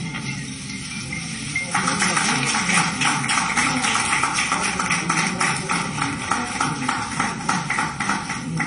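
Applause from a roomful of people, breaking out about two seconds in: a dense patter of many hands clapping, with individual claps standing out.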